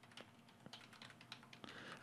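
A computer keyboard being typed on: a quick, irregular run of faint keystrokes as a command is entered.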